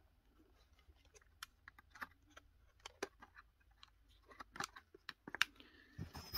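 Light clicks and taps of a plastic trail camera's casing being handled, scattered irregularly, with a few sharper clicks near the end.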